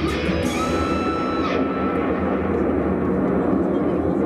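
Stadium PA music echoing through a domed ballpark for the home team's lineup intro. About half a second in, a sudden swelling sweep with a held tone comes in and fades away over the next second.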